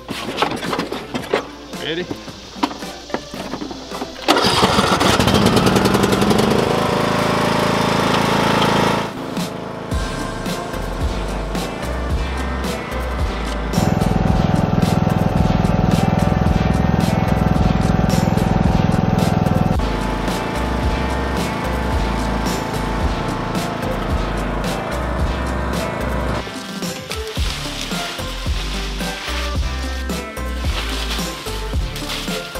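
A John Deere riding lawn mower's engine starts about four seconds in and runs for several seconds. From about ten seconds on, background music with a steady, stepping bass line fills the track.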